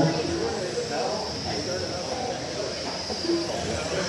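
Electric GT12 1/12-scale RC pan cars racing, with a steady high-pitched whine from their motors and drivetrains, under faint background voices.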